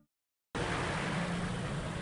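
After half a second of silence, an SUV's engine and road noise cut in suddenly and run steadily as it drives past.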